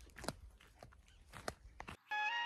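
Faint footsteps crunching on dry grass and straw, a few soft separate crackles.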